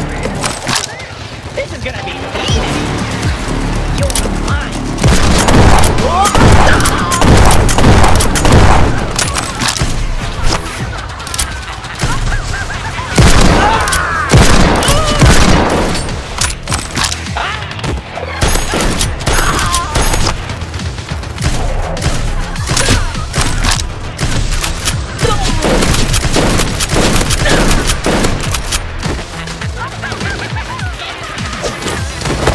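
Rapid shots from toy foam blasters, over background music with a steady bass. Voices shouting and yelling, most strongly in two stretches, about five and thirteen seconds in.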